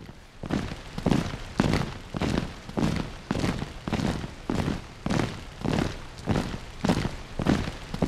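A steady series of heavy thuds, a little under two a second, evenly spaced and each with a short ringing tail.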